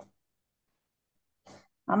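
Silence between turns of speech, broken by a brief faint voice sound about one and a half seconds in, and a woman starting to speak near the end.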